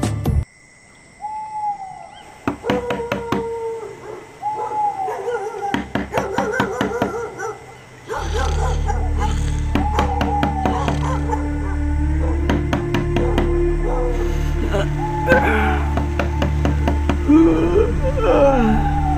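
A dog barking over and over, short arched calls with sharp clicks around them, and from about eight seconds in a loud, steady low drone of background music underneath.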